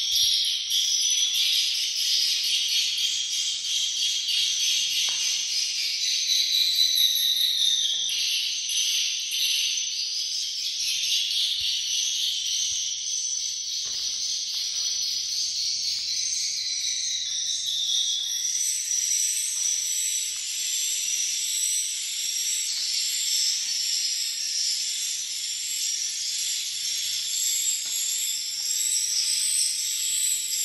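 Many swiftlets twittering together in a dense, continuous high-pitched chatter, a little louder in the first several seconds.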